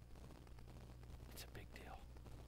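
Near silence: room tone with a steady low hum, and one faint breathy voice sound about one and a half seconds in.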